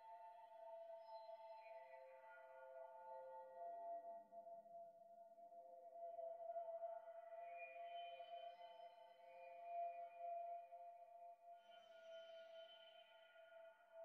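Quiet electronic music intro: a faint, steady synthesizer chord of three held tones, with soft airy swells that rise and fade about every five seconds.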